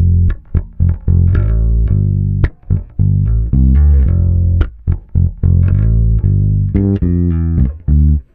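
Ibanez electric bass played fingerstyle: a run of single low plucked notes, some held and some cut short, with brief gaps between phrases.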